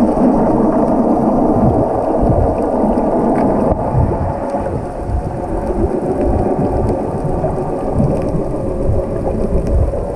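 Muffled underwater water noise recorded by a submerged camera: a steady rushing rumble with irregular low thumps from water moving around the housing and swimmers' fin strokes.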